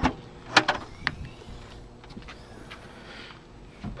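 Rear liftgate of a 2005 Dodge Magnum being unlatched and opened: a few sharp clicks and a clunk within the first second or so, the loudest a little over half a second in, then quiet.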